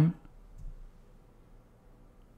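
Near silence: faint, steady room tone just after a spoken question ends.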